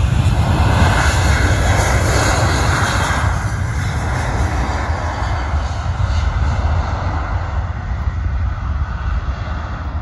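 Jet engines of a Boeing 737-800 running loud at high power as it speeds along a wet runway, with a heavy low rumble. The noise is strongest in the first few seconds and eases gradually as the aircraft moves away.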